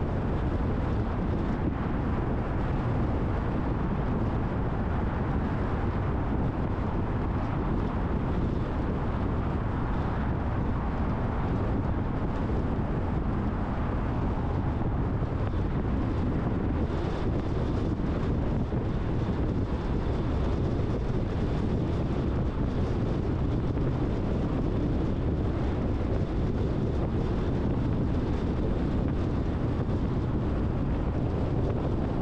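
Steady road noise of a car driving at highway speed: a low tyre-and-engine rumble with wind noise, unchanging throughout.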